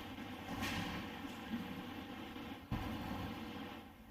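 A pause in speech: quiet room tone with a faint steady hum, and a single soft thump near the three-second mark.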